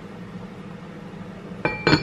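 Enamelled cast-iron lid of a Staub rice pot set down onto the pot with two ringing clanks close together near the end, the second louder, over a steady low hum.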